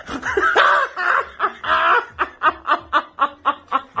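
A woman laughing loudly: a couple of long, high, wavering laughs, then from about halfway a fast, even run of short laugh bursts, about five a second.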